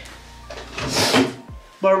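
A bathroom vanity being opened: a short scraping slide about a second in, lasting about half a second.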